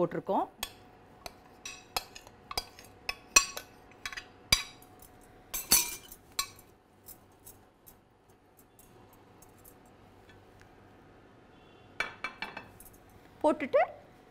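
A metal spoon scraping and tapping against a glass dish while fried onions are scraped into a stainless steel grinder jar: a run of sharp clinks and taps through the first several seconds. A quiet stretch follows, then a few more clinks near the end.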